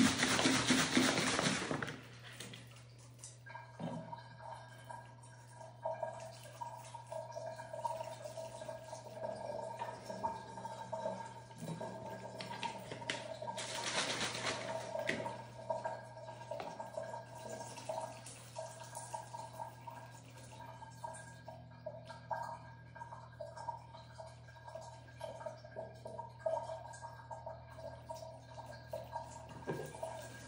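A plastic bottle of salt water shaken hard for about two seconds, then the solution poured slowly into the regeneration port of a ShowerStick shower filter, trickling and dripping as it drains through. Soft background music runs underneath.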